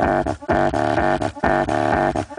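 Bass-heavy music played loud through a car audio system driving a 500 W RMS Hifonics Zeus subwoofer. The music comes in pulses of roughly a second, with brief dips between them.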